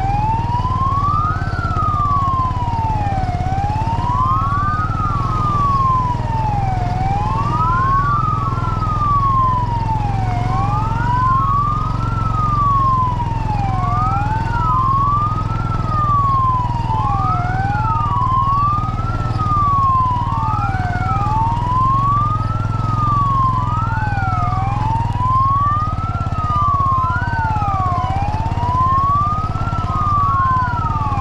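A vehicle siren wailing in slow, even rises and falls, about three and a half seconds per cycle, with two wails overlapping a little out of step. Under it runs a steady low engine hum.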